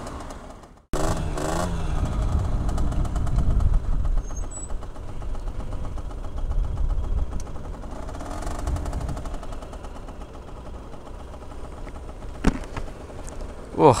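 Motorcycle engine running on the move, with a low steady rumble of engine and road noise; it picks up a little after a short gap about a second in and again around eight seconds, then settles lower as the bike slows. A single sharp click comes near the end.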